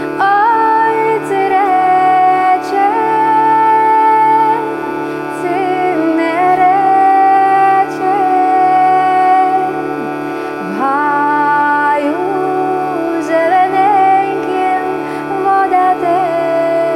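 A woman singing a Lemko folk melody in long phrases over the steady drone of a hurdy-gurdy (Ukrainian lira).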